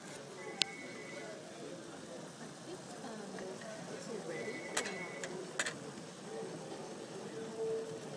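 Background chatter of a busy restaurant dining room, with three sharp clinks of tableware, the first about half a second in and two more close together around the middle, each ringing briefly.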